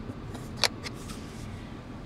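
One sharp plastic click about a third of the way in, with a few fainter ticks, from a hand handling the centre-console trim around the USB ports, over a low steady cabin hum.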